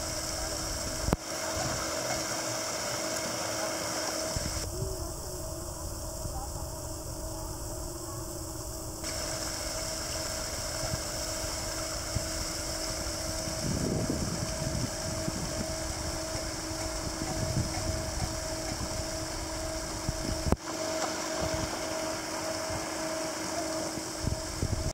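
Electric paddlewheel aerator running in a shrimp pond: a steady motor hum over churning, splashing water. The sound changes abruptly a few times.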